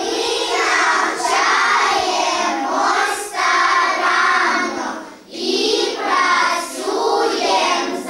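A class of young children singing together in unison, the song broken by short pauses for breath about three and five seconds in.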